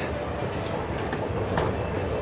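An escalator running: a steady mechanical rumble with no separate knocks.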